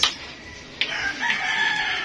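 A rooster crowing once: a single drawn-out, pitched call starting just under a second in and lasting about a second.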